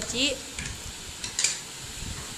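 Slotted steel spatula stirring goat liver pieces in a metal kadai while they sizzle and fry over a gas flame, with a short metallic scrape about one and a half seconds in.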